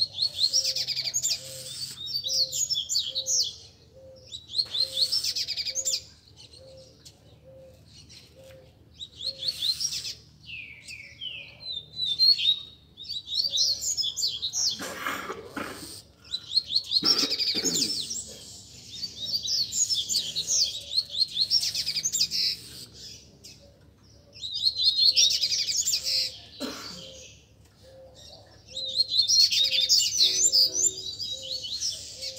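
Caged coleiros (double-collared seedeaters) singing in turn, in fast, chattering twittering phrases of a few seconds each with short pauses between. This is male song in a roda, the birds answering one another as they warm up.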